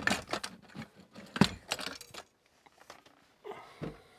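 Metal tripod and camera gear clinking and knocking as they are lifted out of the back of a van: a quick run of sharp clanks over the first two seconds, the loudest about halfway, and another brief knock near the end.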